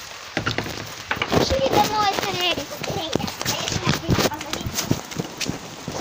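Indistinct voices, with frequent knocks and rustling close to the microphone.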